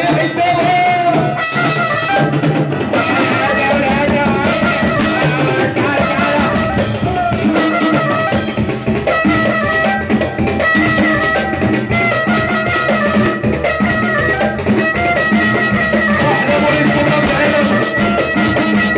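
Live band music: a violin, bowed upright on the player's knee, carries a sliding, ornamented melody over hand drums and a drum kit, playing steadily throughout.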